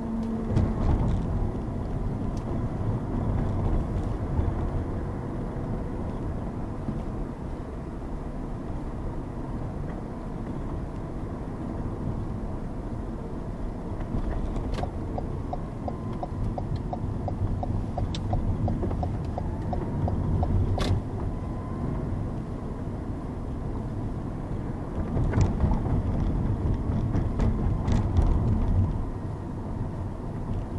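Car driving through city traffic heard from inside the cabin: a steady engine and road rumble, with a light regular ticking for a few seconds midway and a few brief clicks.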